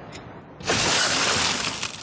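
A car's side window smashed in: a sudden loud shatter of glass a little over half a second in, with breaking glass crackling on for about a second.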